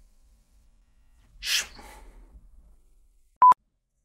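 A short breathy burst from a person, like a sharp exhale or stifled sneeze, about a second and a half in. Near the end comes a brief, loud, pure electronic beep that cuts off sharply.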